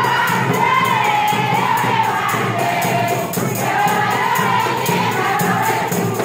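A chorus of women singing together over a steady, evenly repeating jingling percussion beat: the song of a Comorian bora dance.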